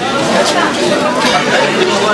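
Indistinct chatter of many people talking at once, steady and loud, with no one voice standing out.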